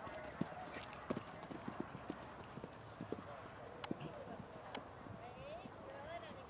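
A horse's hooves striking sand arena footing at a canter: a run of short, irregular dull thuds, several a second.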